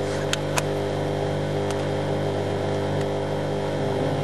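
A steady low hum made of several fixed tones, with two sharp clicks in the first second and a fainter click a little later.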